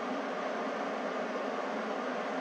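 Steady hiss with a faint low hum, unchanging throughout: room tone.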